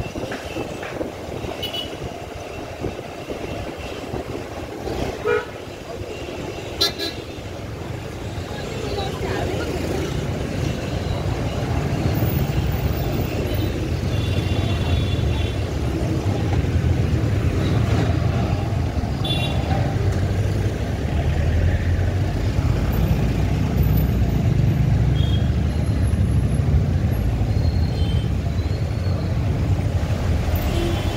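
City street traffic heard from a moving motorbike: short vehicle-horn toots come several times over a steady rumble of engines. The rumble grows louder about twelve seconds in.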